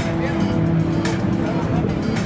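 Six-string electric bass played through an amplifier, holding long sustained notes, with crowd chatter underneath.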